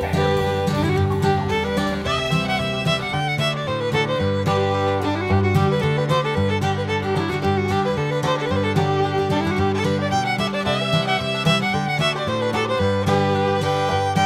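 Background music: a lively fiddle tune over guitar accompaniment with a steady bass line, in a bluegrass or country style.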